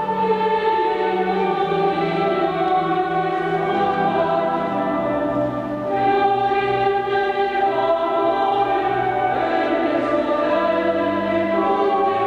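Mixed choir singing slow, sustained chords over organ, moving to a new chord after a brief dip in level about six seconds in.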